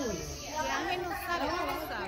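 Speech only: a woman talking, with no other sound standing out.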